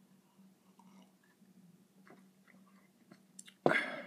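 Faint mouth and swallowing sounds of a person sipping beer from a glass, over a low steady hum, then a short loud burst of noise near the end.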